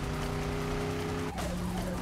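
A 1965 Chevrolet Corvette's V8 running hard at speed, holding a steady note. A little past halfway through the note changes, and then it slides downward.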